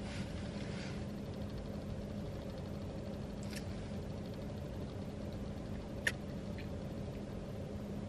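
Steady low hum of a car idling, heard from inside the cabin, with a brief rustle at the start and two small clicks partway through.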